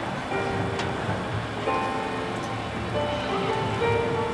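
Marching band and its front ensemble playing a soft passage of long held notes at several pitches, new notes coming in about a third of a second in and again past a second and a half, over a low outdoor rumble.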